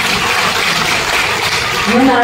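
Audience applauding: a dense, even patter of clapping that fades away near the end.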